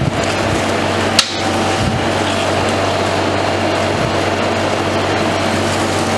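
Roll ice cream machine humming steadily as its refrigeration unit chills the steel plate, while a metal spatula scrapes and mixes fruit-and-milk mixture on the frozen plate. One sharp clack about a second in.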